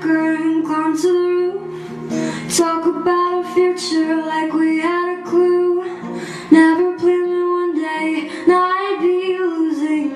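A female singer singing a slow pop ballad verse over a gently played acoustic guitar.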